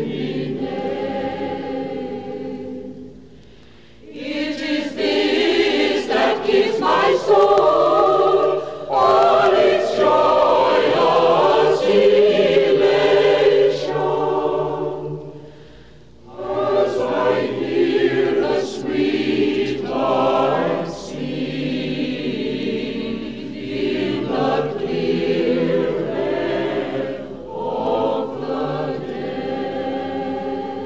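Choir singing in long phrases, with brief pauses about four and sixteen seconds in.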